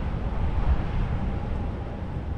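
Wind buffeting the microphone: an irregular low rumble that flutters without a break.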